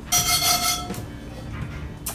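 Steel wool scrubbing hard across a rusty cast iron skillet: a rough scraping burst in the first second, during which the pan rings with a steady metallic tone, then softer rubbing.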